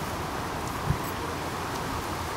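Steady outdoor background noise, a low hiss and rumble, with a single soft low thump about a second in.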